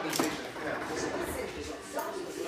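Indistinct voices in the room, with one short knock about a fifth of a second in.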